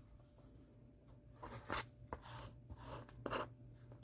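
Faint scratchy swishes of sewing thread being drawn through fabric and the cloth being handled during hand stitching, four short ones in the second half.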